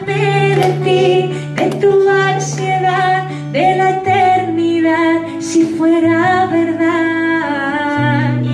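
A woman singing a song in Spanish while strumming an acoustic guitar. The low guitar chords change twice under the melody.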